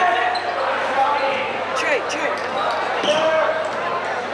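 Basketball game in a gym: the ball bouncing on the hardwood court and sneakers squeaking, with spectators' chatter and shouts throughout.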